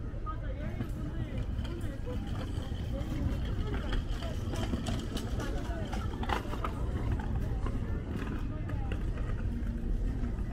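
Busy city street ambience: passers-by talking, over a steady low rumble of traffic, with a brief clatter a little past halfway.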